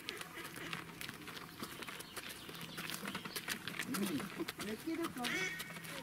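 Hooves of a walking pack donkey and the handlers' footsteps on a gravel path, a string of irregular small clicks and scuffs, with faint voices in the background about four seconds in.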